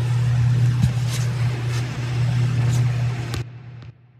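A steady low droning hum under a hiss, with a few faint ticks, that cuts off suddenly about three and a half seconds in and leaves a brief faint tail: the closing drone of an electronic track.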